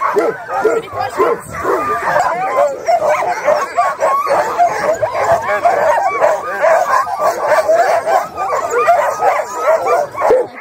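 A team of harnessed sled dogs barking and yipping together in a dense, continuous chorus of many overlapping calls: the excited noise sled dogs make while hitched up and waiting to run.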